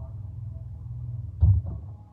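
A steady low hum, with a single loud thump about one and a half seconds in. The hum drops away at the end.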